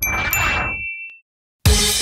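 Logo sound effect: a swelling whoosh with two bright chime dings that ring for about a second. Electronic dance music with a steady beat of about two a second starts about one and a half seconds in.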